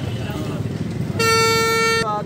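Vehicle horn sounding one steady, unbroken note for just under a second, starting a little past halfway, over a low hum of street noise.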